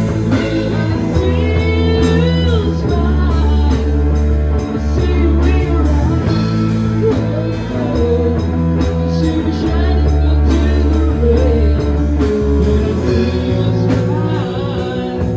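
Live band playing together: electric guitars, bass guitar and drum kit. A lead line glides up and down in the first few seconds.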